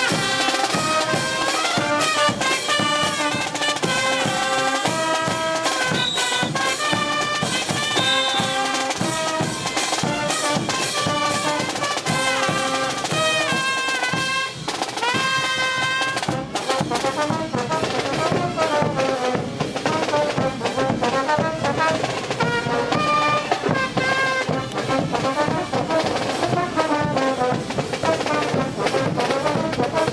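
Live brass band playing a diablada dance tune: trumpets and trombones carry the melody over a steady beat of bass drum and crash cymbals.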